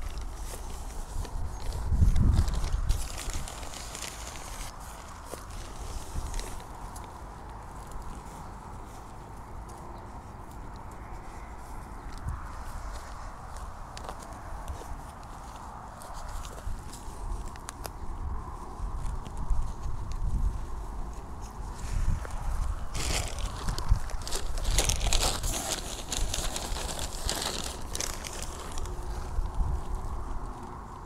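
Hands planting young shrubs: soil scraped and pressed around the roots, dry grass and a black plastic bag of soil rustling and crinkling, and a plastic nursery pot squeezed to free a plant. There are a few dull thumps about two seconds in, and the handling grows busier and louder in the last third.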